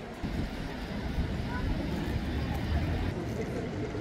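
Busy city-square ambience: voices of passers-by over the low rumble of a passing vehicle, heaviest in the first three seconds.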